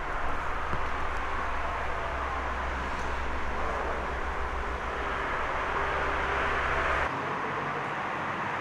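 Steady outdoor background noise, like distant traffic, with a low rumble that drops away about seven seconds in.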